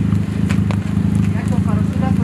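Engine of an Afghan-built prototype sports car running at a steady idle: a deep, loud rumble with rapid, even pulsing.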